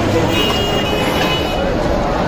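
Steady outdoor market din: traffic noise and a mix of voices, with a thin high tone heard for about a second soon after the start.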